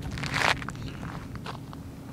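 Footsteps on a dirt road: one louder scuff about half a second in, then a few faint ticks and scrapes.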